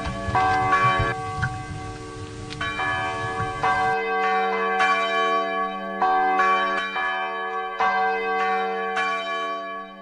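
Bells ringing, struck about once a second, each note ringing on over a steady low hum, with a rumble under the first few seconds. The sound fades away at the end.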